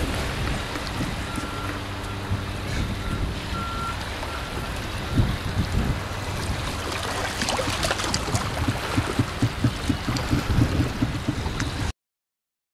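Outdoor background sound of water washing against rocks over a steady low engine hum. A run of faint, evenly spaced high beeps comes in the first few seconds, and irregular crackles and knocks fill the second half.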